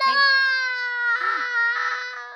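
A toddler's voice holding one long, loud, steady-pitched "aah" that grows rougher and breathier in its second half before trailing off.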